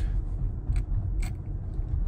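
Cabin road noise of a Tesla electric car driving on a snow-covered road: a steady low rumble from the tyres and road, with a couple of faint short clicks near the middle.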